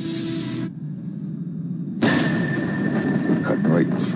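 A rushing hiss cuts off under a second in, leaving a low rumble. About two seconds in, a loud rumble of an airliner in rough air starts suddenly, with a steady high-pitched cockpit tone held over it.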